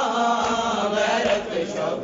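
Men's voices chanting a noha, a Shia mourning lament, in a steady sung recitation.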